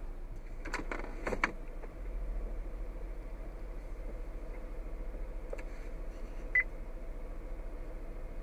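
A few sharp clicks about a second in, then a single short beep near six and a half seconds as the Ford Flex's dashboard touchscreen is operated, over a steady low hum in the car's cabin.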